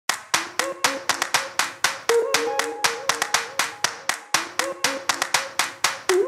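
Rhythmic hand claps, about four a second with some quick doubles, over soft held notes, as the opening beat of a music track.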